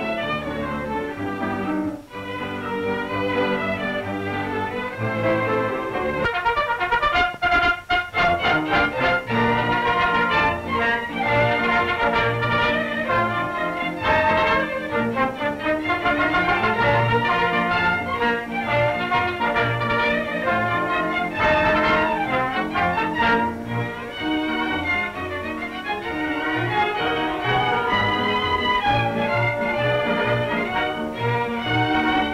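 Orchestral film score with strings to the fore, playing continuously, with a run of quick, sharp accented notes about seven seconds in.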